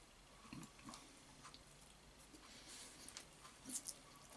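Faint eating sounds of a person working through a bowl of pasta with chopsticks: quiet chewing and soft mouth clicks, with a brief louder slurp-like sound near the end.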